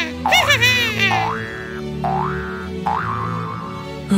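Cartoon 'boing' sound effects for bounces on a trampoline, springy sweeps rising in pitch, twice in the second half, over background music.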